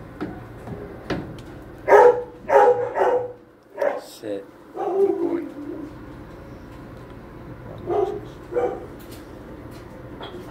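Dogs barking in a shelter kennel: three loud barks in quick succession about two seconds in, another just before the middle, a lower drawn-out call that slides down in pitch around five seconds, and two more barks near the end.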